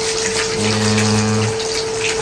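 Kitchen tap running steadily into a sink while vegetables are rinsed under it by hand. A faint steady whine runs throughout, and a low steady hum sounds for about a second in the middle.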